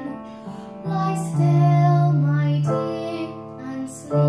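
A girl singing a cradle song to piano accompaniment, holding each note of the phrase. There is a brief lull near the end before the next phrase begins.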